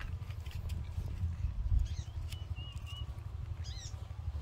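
Low, uneven wind rumble on the microphone, with a few thin, high whistled calls in the second half and a short chirp just before the end.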